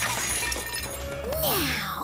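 Cartoon sound effect of a jumble of metal teaspoons clattering and jangling as they are lifted by unicorn magic, with a shimmering sparkle over it. A short tone rises and then falls near the end.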